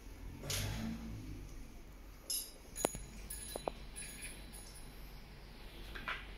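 Light workshop handling noise: a brief rustle about half a second in, then a few sharp clicks and clinks of small metal brake parts being handled.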